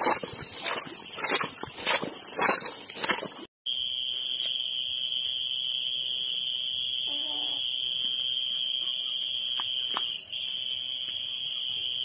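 Rustling and handling noise with repeated short knocks. After an abrupt cut comes a continuous, steady, shrill high-pitched drone of night insects.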